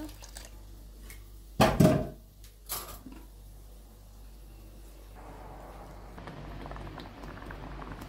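Cookware clunking against a small saucepan, once loudly about two seconds in and again more lightly a second later. From about five seconds in, peanut sauce simmers in the pan with a soft bubbling fizz.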